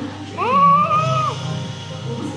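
A single drawn-out meow-like call, about a second long, rising in pitch, held, then falling away, over background music.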